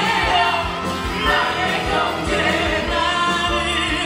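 A man singing live into a microphone over a backing track with a steady drum beat.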